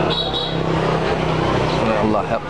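A small motorbike engine running at low speed as the bike moves off, with voices around it.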